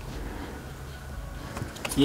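Low steady background rumble, with a few faint clicks near the end.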